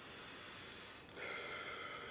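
A man's faint breath drawn in, starting about a second in, over quiet room tone.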